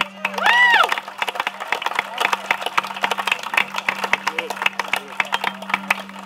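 A small crowd clapping, dense and irregular, with one rising-and-falling whoop from a voice about half a second in. A steady low hum runs underneath.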